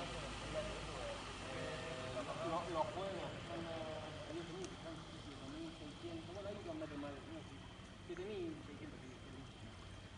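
Indistinct conversation of people talking in the background, too faint to make out the words, fading a little towards the end.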